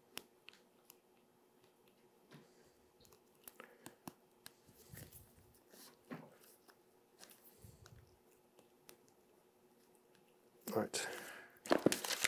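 Faint, scattered taps and small rubbing noises of hand work on a vellum-covered book. Near the end comes a louder rustle of paper or thin card being picked up and handled.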